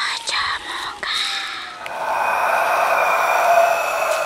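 A whispering voice in the first part, then a steady hiss that grows louder through the second half.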